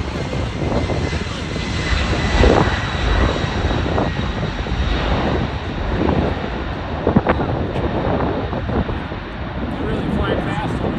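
Lockheed C-5 Galaxy flying a low pass: the deep rumble of its four turbofan engines, with a steady high whine over it, swelling slightly a couple of seconds in.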